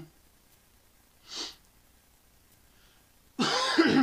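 A man coughs once, loud and harsh, near the end, after a short sharp breath in about a second and a half earlier.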